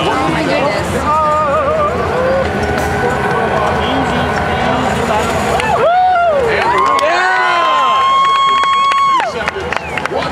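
Arena crowd noise with cheering. About six seconds in come a few swooping tones, then a steady electronic buzzer tone held about two seconds that cuts off sharply: the arena's end-of-match signal.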